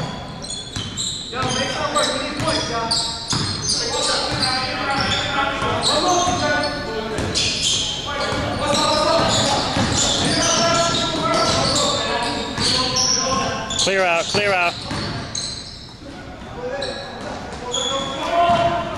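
Basketball game in a gym: a ball bouncing on the hardwood court among players' indistinct voices, echoing in the large hall.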